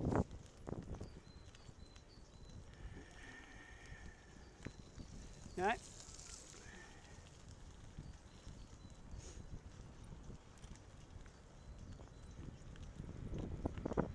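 Bicycle rolling along a rough gravel track: steady tyre noise with scattered knocks and rattles over the bumps, busier and louder near the end.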